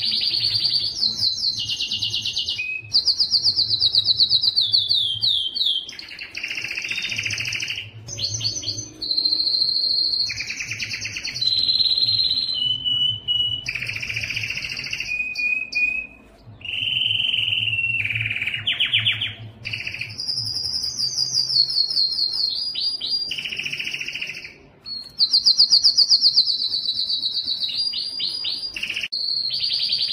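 Canary singing a continuous song of rapid high trills and rolls, one phrase running into the next with only brief pauses.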